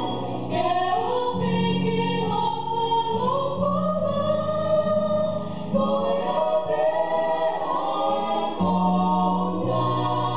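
A women's vocal trio singing a gospel song in close harmony in Tongan, the melody lines moving over low notes held underneath.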